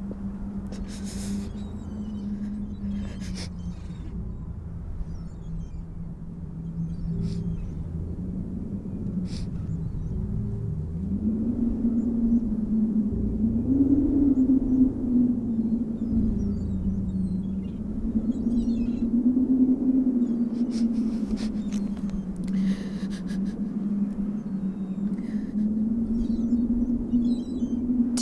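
Low sustained musical drone that slowly wavers in pitch, rising and growing louder about a third of the way in, over a low rumble of wind on the microphone.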